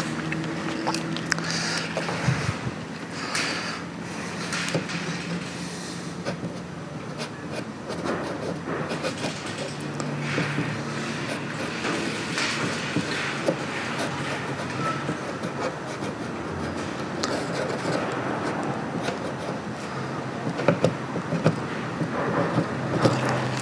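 Paint marker tip scratching and ticking across the ridged slats of a wooden louvred shutter in short, irregular strokes as small tags are written, over a steady mechanical hum.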